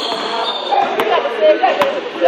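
A basketball dribbled on a hardwood gym floor: two sharp bounces, about a second in and near the end, among people talking in the gym.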